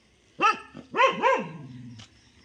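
A dog barking: one short bark, then two quick barks in a row about a second in.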